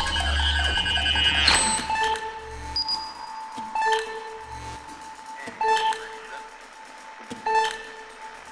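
Contemporary chamber ensemble with electronics playing a sparse passage. A held high tone runs through it, sharp percussive attacks come every couple of seconds, and a low electronic rumble rises and drops away twice.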